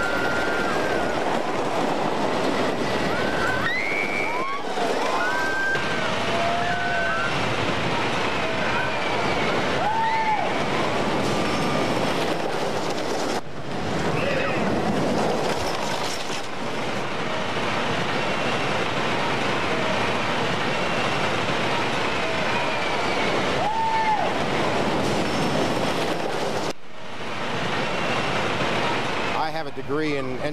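A wooden roller coaster train running along its track with a continuous loud rumble, while riders scream and yell over it, most often in the first half.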